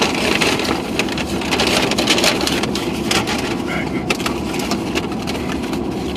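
Paper bag and cardboard burger box being handled and opened, with many small crinkles and clicks, over a steady hum inside a car's cabin.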